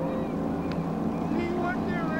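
A motorboat under way: its engine and the rush of wind and water, with people's voices talking over it from about halfway in.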